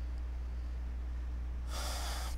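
A man's breath into a close microphone, one short burst near the end, over a steady low hum.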